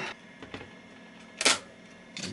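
A single sharp click about one and a half seconds in, with a few faint ticks before it: a DIP chip extractor pulling the Commodore 64's kernal ROM out of its socket.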